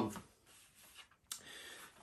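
Faint handling of a glass soda bottle: a single light click a little past halfway, then a soft rub for about half a second.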